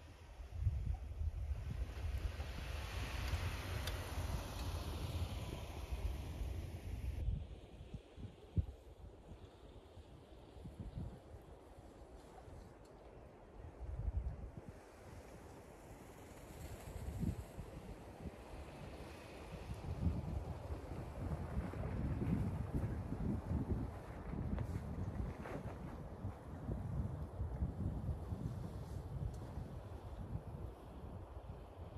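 Wind gusting on the microphone, over the faint sound of a Lexus GX470 SUV driving slowly through snow. The sound changes abruptly about seven seconds in, where one shot cuts to the next.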